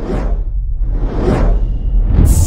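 Two whoosh sound effects, swelling and fading about a second apart, over a steady deep rumble.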